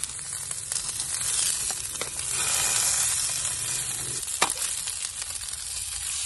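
Salmon frying, a steady sizzle, with a sharp click a little over four seconds in.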